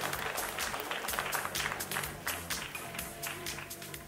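Applause over background stage music, the clapping thinning out and the sound fading in the last second.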